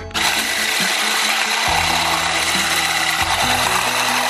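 Electric whisk running steadily at speed, its wire whisk beating egg whites into foam in a stainless steel bowl; it switches on abruptly just after the start.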